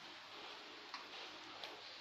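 A couple of faint clicks from a plastic clothes hanger being handled, over quiet room tone.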